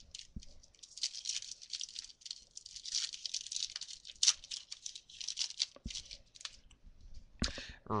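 Foil wrapper of a trading-card pack being torn open and crinkled by hand: an uneven, high-pitched crackling rustle with a sharper snap near the end.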